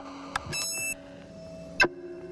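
Sparse experimental electronic music: sharp digital clicks, a short bright beeping tone about half a second in, and a louder click near the end, over faint steady low tones.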